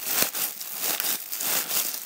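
Clear plastic wrapping crinkling irregularly as hands squeeze and turn a soft ball sealed inside it, with a sharp crackle about a quarter second in.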